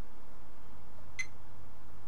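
Fluke 87V multimeter giving one short, high beep about a second in as its probes bridge a conducting transistor junction in diode test, the display settling near 0.74 V. A steady low hum runs underneath.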